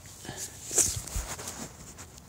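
Faint handling noise: light rustling and small knocks, with a brief sharp rustle a little before one second in.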